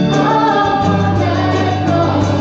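A live band and a group of singers performing a contemporary Christian worship song, the voices singing together over sustained chords.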